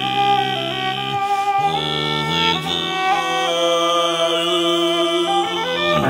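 Cello and morin khuur (Mongolian horse-head fiddle) playing a traditional Bulgarian folk melody together, the bowed notes held and moving in steps.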